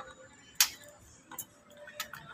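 Two sharp, brief clicks about a second apart, the first louder, over a low steady background.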